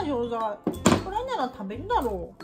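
A single hammer knock on a wooden board, crushing a tablet folded in paper, about a second in, amid a high voice whose pitch glides up and down.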